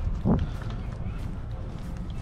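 A brief voice, a short rising exclamation, about a quarter second in, over a steady low rumble of wind on the microphone.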